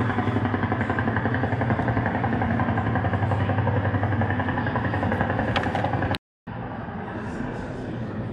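Helicopter rotor sound played as part of a museum exhibit: a steady low pulsing rumble that cuts off abruptly about six seconds in, followed by a quieter room hum.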